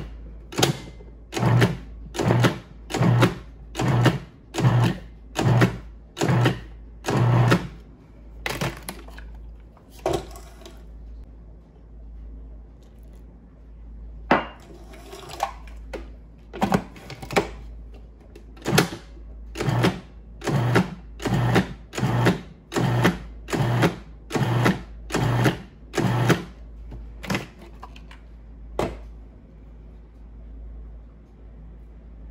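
Food processor pulsing in short bursts, one after another, its blade cutting cold butter into flour for pastry dough. After a pause of several seconds, while ice water goes in, a second run of pulses follows as the dough comes together.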